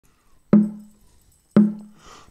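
Two low notes struck on a digital keyboard about a second apart, each with a sharp attack that dies away quickly, like a count-in before the song starts.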